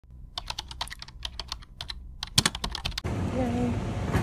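Keyboard typing: quick, irregular clicks for nearly three seconds that stop abruptly. A steady background rumble follows, with a brief voice near the end.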